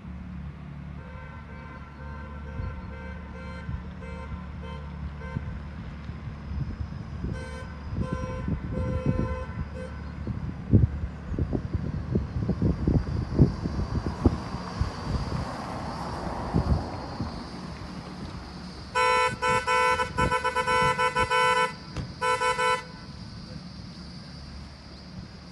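A car horn sounding. There are faint short toots in the first few seconds and again around eight seconds, then a loud honk lasting about two and a half seconds near the end, followed by one short toot. A low steady rumble runs underneath, with irregular thumps midway.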